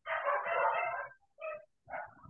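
A domestic animal calling over a video-call microphone: one call about a second long, then two short ones near the end.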